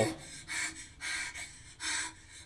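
A person breathing hard: three quick, hissy breaths in and out, a little over half a second apart.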